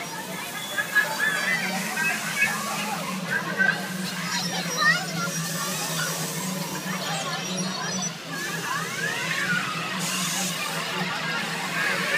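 Children shouting and squealing as they play, their high voices rising and falling, over a steady low hum.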